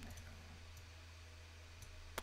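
Near silence over a steady low hum, with a few faint computer mouse clicks shortly after the start and one near the end, as a viewpoint is dragged and dropped in the software.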